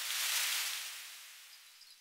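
A transition sound effect: a sudden rush of hiss that peaks about half a second in and then fades away, leaving a faint glittering shimmer near the end.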